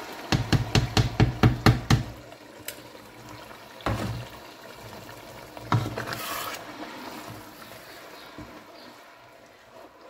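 A plastic container is knocked rapidly against the rim of a pot, about ten sharp knocks in under two seconds, to shake blended tomatoes into hot frying tomato paste. A couple of single knocks follow, then a wooden spoon stirs the stew over a low sizzle.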